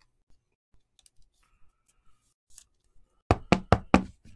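A clear plastic magnetic card holder handled with light clicks, then knocked on the tabletop four times in quick succession near the end.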